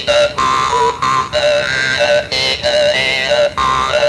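Hmong ncas (jaw harp) being played: a steady low drone with bright, voice-like overtones that jump in pitch, in short phrases broken by brief gaps about once a second, shaped to speak words in the manner of Hmong speech.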